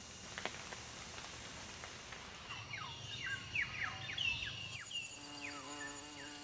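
Insects buzzing steadily at a high pitch. From about two and a half seconds in come quick falling chirps, likely birds, and near the end a steady low tone joins in.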